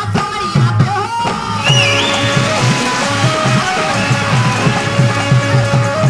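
Live Bhojpuri qawwali music: a woman singing into a microphone over a quick, steady drum beat and held instrumental tones. A fuller, brighter layer joins about a second and a half in.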